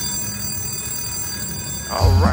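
Quick Hit Blitz slot machine sounding its bonus trigger after three Free Blitz Games symbols land: several steady, high-pitched tones held together.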